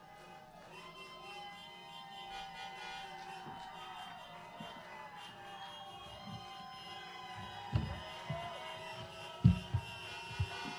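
Many car horns sounding together in overlapping held tones of different pitches: a drive-in audience honking in applause between songs. A few low thumps near the end.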